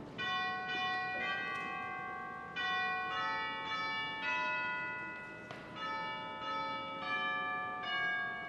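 Bell chimes playing a slow tune of single struck notes, mostly about half a second apart in short groups, each note ringing on and fading under the next.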